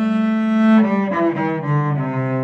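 Bowed cello playing the A minor blues scale: one held note, then a quick run of shorter notes stepping down in pitch.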